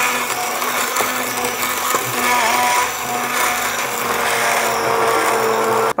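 Handheld immersion blender running steadily at a constant pitch, pureeing soaked red lentils and water into a smooth batter in a wooden bowl. It stops right at the end.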